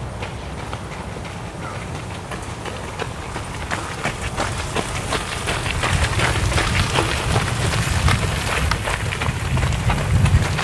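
A train rolling along the track: a low rumble with a rapid, irregular clatter of wheel clicks, growing louder through the second half.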